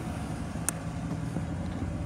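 2011 Ford Crown Victoria Police Interceptor's 4.6-litre V8 idling steadily, a low even hum, with one brief click about two-thirds of a second in.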